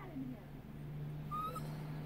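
Small dog whining: a low, steady, drawn-out whine, with a short high whimper about a second and a half in.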